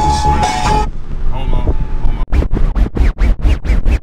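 Hip-hop track intro: the music with its held synth tone cuts out about a second in, then a fast run of DJ turntable scratches, about five or six a second, over the last two seconds.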